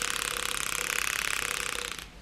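Pull-string jiggle mechanism of a TOMY Lamaze hanging soft bird toy buzzing as the string winds back in. It is a rapid, even buzz that fades slightly and stops at the end.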